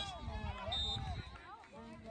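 Distant voices of players and spectators calling out across the field, with a short, faint high-pitched referee's whistle blast about two-thirds of a second in.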